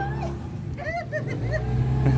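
A boat's motor running with a steady low hum; the hum weakens briefly in the middle and comes back stronger about one and a half seconds in.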